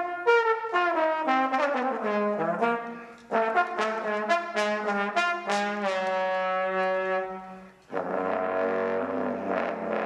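Jazz trombone solo: a run of quick phrases of notes with short breaks between them. After a brief drop about eight seconds in, a fuller, sustained sound with a low note underneath takes over.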